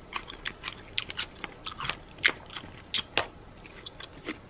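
Close-up chewing of crunchy raw vegetables from a salad: a quick, irregular run of crisp crunches, with louder crunches a little past two seconds and about three seconds in.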